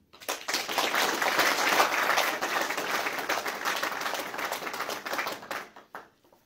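Audience applause: a crowd clapping for about five and a half seconds, thinning out and stopping near the end.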